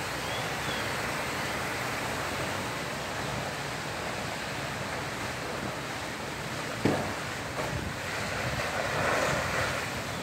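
Steady rushing noise from a burning house fire, with a single sharp crack about seven seconds in.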